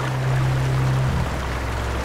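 Steady rush of cascading water from a river and its waterfall. A low droning tone sits underneath and shifts down in pitch about a second in.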